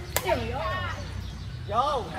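A single sharp crack of a badminton racket striking the shuttlecock, just after the start.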